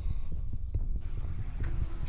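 A low, steady throbbing hum with no speech over it.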